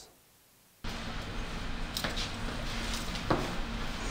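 Near silence for under a second, then the steady hiss and low hum of a small tiled restroom, with two sharp clicks from a belt buckle being undone.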